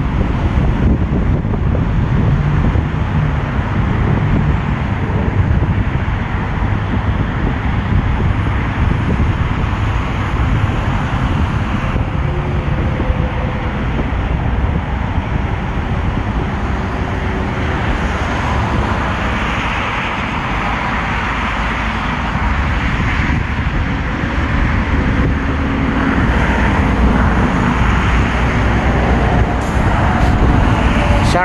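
Steady road traffic noise, a continuous rumble of passing vehicles that stays loud throughout.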